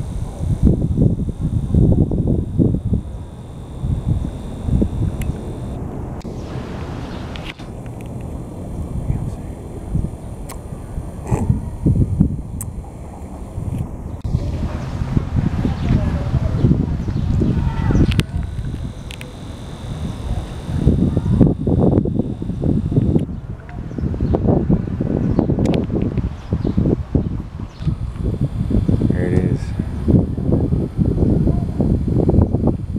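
Wind buffeting a handheld camera's microphone outdoors: an uneven low rumble that swells and drops throughout.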